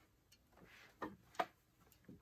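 Two faint clicks from a digital organ console's stop tabs being set, about a second in and less than half a second apart.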